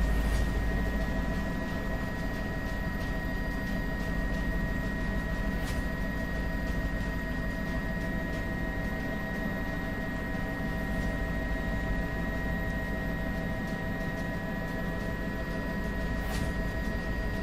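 Helicopter noise heard from aboard the aircraft: a steady low rumble with a constant high whine, unchanging throughout.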